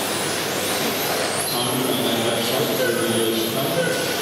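Electric RC touring cars with 13.5-turn brushless motors racing round the track: high motor whines that rise and fall in pitch as the cars speed up and slow, over a steady hiss.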